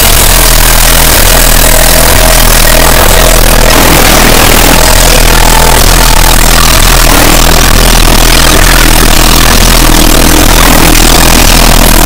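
A loud, unbroken wall of harsh, distorted noise filling every pitch, with a steady low hum underneath and faint held tones drifting in and out.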